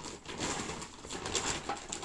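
Rustling and crinkling of shopping bags and packaging as items are rummaged through, a dense run of small crackles.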